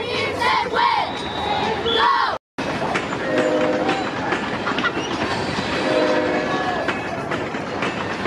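Football crowd yelling and cheering, with a referee's whistle blown about a second in. After a short cut in the sound, a horn sounds twice briefly over the crowd noise.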